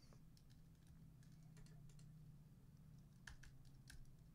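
Faint, scattered clicks of a computer keyboard and mouse, a few isolated taps with a short cluster about three seconds in, over a low steady hum.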